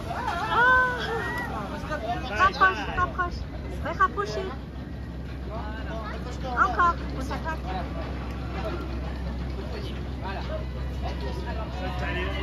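Several people's voices talking and exclaiming in short bursts, over a steady low hum.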